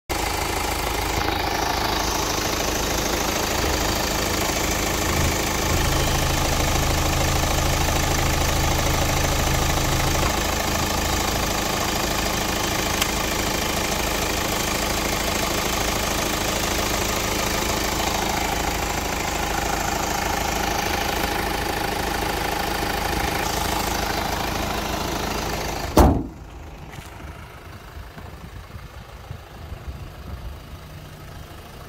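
Hyundai Tucson ix35's CRDi 16V common-rail diesel engine idling steadily, heard up close in the open engine bay. Near the end a single sharp thump, after which the engine sounds much quieter.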